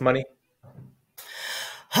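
The end of a man's spoken question, a short silent pause, then a man's audible breath of under a second, drawn just before he starts to answer.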